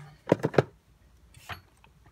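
Short knocks and clicks from handling a plastic-cased circuit board and tools: three close together in the first half-second, then one more about a second and a half in.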